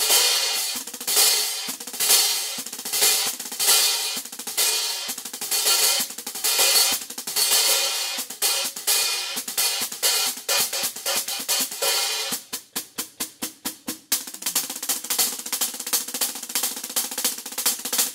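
Meinl Byzance Vintage Sand 14-inch hi-hats played with sticks in a groove on a drum kit, with crisp repeated strokes. About twelve seconds in comes a short run of quick, evenly spaced strokes, and then the steady playing resumes.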